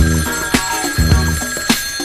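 A telephone ringing over a soul band's groove of bass and drums. The ring starts at once and stops near the end, setting up the operator phone-call skit that opens the record.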